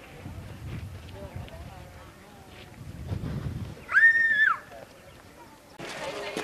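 Wind rumbling on the microphone with faint distant voices. About four seconds in, a single high, clear call or whistle rises, holds one pitch for under a second, then falls away. It is the loudest sound here.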